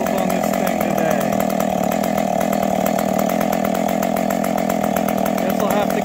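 Stihl 020AV two-stroke chainsaw idling steadily.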